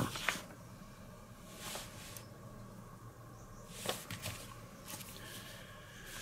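Faint scratching and a few light clicks of metal tweezer points working the paint on a small plastic model part, chipping it, over quiet room tone.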